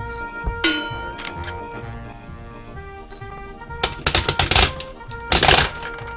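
Plastic toy candy dispenser being worked: a few clicks from its knob, then a quick run of ratcheting clicks as the knob is turned, and candies rattling out into the chute.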